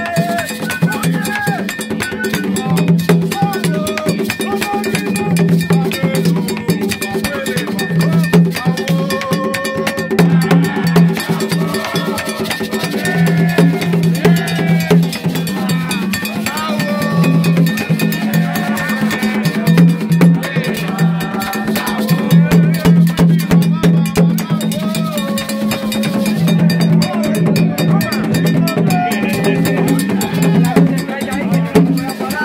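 Gagá hand drums beaten in a steady driving rhythm with a clanking metal beat, and voices singing over them.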